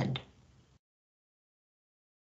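A woman's voice ending a word, then dead digital silence for the rest of the time.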